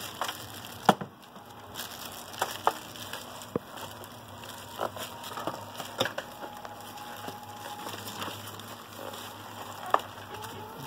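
Plastic wrapping around statue parts crinkling and rustling as it is handled, with scattered sharp snaps and crackles.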